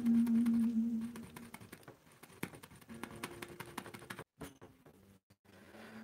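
Faint background music holding a low note, broken by a rapid run of thin clicks and two brief dropouts where the sound cuts out completely, typical of a live stream losing its connection.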